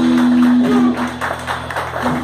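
Live rock band of guitars, bass and drums holding a closing chord with drum and cymbal hits; the chord drops away near the end.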